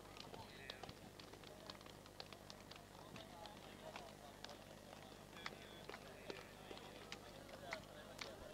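Very quiet outdoor crowd: faint, indistinct chatter of many men, with scattered small clicks and taps over a low steady hum.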